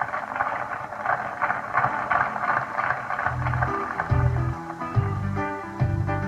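A live pop-rock band starting a song. The first seconds are a dense, noisy mid-range sound, and about three seconds in, bass guitar notes and sustained keyboard and guitar tones come in.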